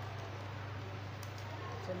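Faint handling of origami paper: soft rustles and a few small clicks as a folded paper strip is pushed into a paper frog, over a steady low hum.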